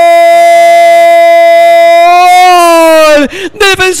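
A radio football commentator's long held goal cry: one loud, steady, sustained note that lifts slightly and then falls away about three seconds in, giving way to excited speech.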